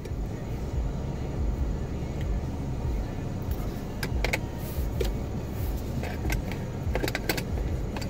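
Steady low rumble of a car's idling engine heard inside the cabin, with a scatter of small sharp clicks and taps from handling small objects, about a handful of them in the second half.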